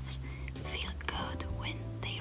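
Soft, whispery speech over a steady low hum.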